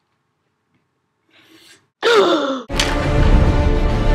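A short quiet stretch with a faint breath, then a loud vocal cry falling in pitch about two seconds in. Loud music with heavy bass kicks in right after it.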